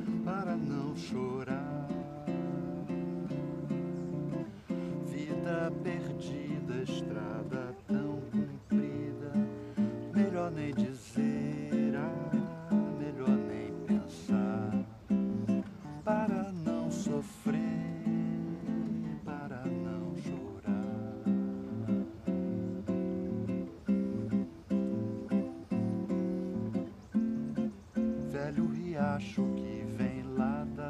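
Nylon-string classical guitar played in a bossa nova style, with rhythmic plucked chords, and a man's voice singing along in places.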